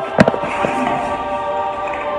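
A punch landing on a heavy punching bag: one sharp hit shortly after the start, then a lighter one, over background music.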